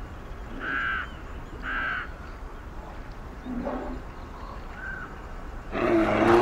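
Crow caws: two short, harsh calls about a second apart, then a single fainter call later on. A low grunt comes in between.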